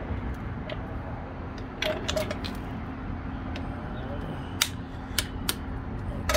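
Small metal clicks and taps as the handle is fitted onto a hydraulic trolley jack's handle socket: a few light clicks about two seconds in, then three sharp clicks near the end.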